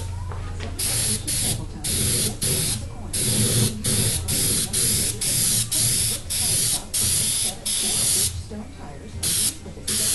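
Small airbrush spraying lacquer melt in short, repeated bursts of hiss, about one a second, pausing briefly near the end before two more quick bursts. The solvent is being misted onto the old lacquer to soften it so the new lacquer will bond.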